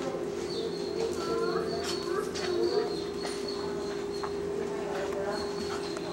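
Faint background voices over a steady hum, with a few short light taps.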